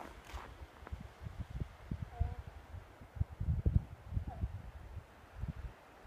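Uneven low rumbles and bumps of wind buffeting the microphone, with two faint short chirps about two and four seconds in.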